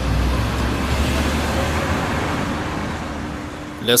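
Street traffic: a steady low engine rumble under a hiss of road noise, easing off toward the end.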